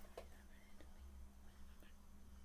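Near silence: a faint steady low hum with a few soft, short sounds scattered through it.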